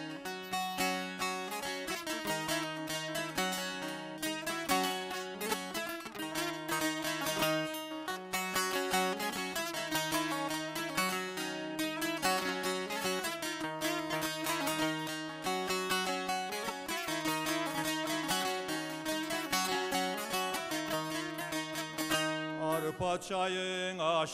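Double-necked saz (bağlama) played solo with a quick, busy strumming rhythm, a melody running over a low sustained note: the instrumental introduction to a Turkish folk lament. A voice starts singing at the very end.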